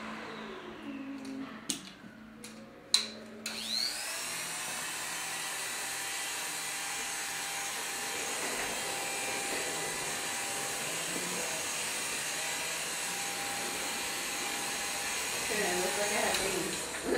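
Electric hair clippers switched on with a sharp click about three seconds in after a few lighter clicks, then running steadily as they cut short hair.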